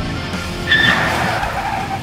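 A pickup truck's tyres squeal briefly as it pulls up to a stop, starting suddenly about two-thirds of a second in and fading over the next second, with music playing underneath.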